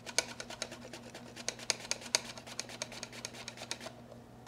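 Fuyu persimmon being shaved on a Japanese mandoline: a rapid run of sharp clicks, several a second, as the fruit is pushed back and forth across the blade.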